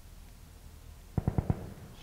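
Small six-shot Belgian .22 Short pocket revolver being loaded by hand: four quick metallic clicks about a second in, each roughly a tenth of a second apart, as the cylinder is turned on to the next chamber.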